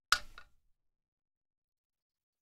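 A short, sharp click with a brief rattle right at the start, from the plastic lift-and-adjust mechanism of an office chair being handled.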